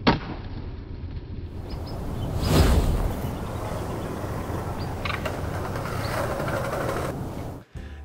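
Skateboard tail snapping on pavement as a trick is popped, a single sharp crack at the start, followed by steady street noise with a louder swell about two and a half seconds in.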